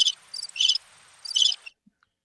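Cricket chirping sound effect, the 'crickets' gag for a joke that falls flat: short high-pitched chirps repeat every third to half second, then cut off abruptly near the end.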